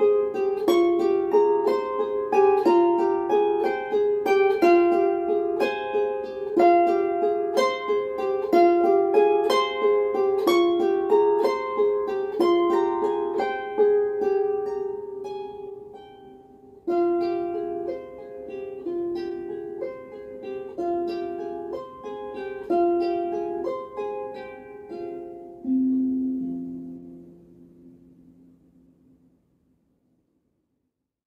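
Solo harp music: a slow melody of single plucked notes that ring and decay. There is a brief pause a little past halfway, and the piece ends on low notes that ring out and fade away.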